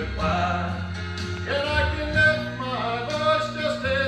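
A man singing a gospel song with instrumental accompaniment, his voice holding long notes over a steady bass line.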